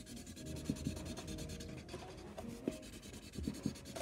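Marker tip scribbling back and forth on cardboard, colouring in squares: a soft, irregular scratchy rubbing with small ticks.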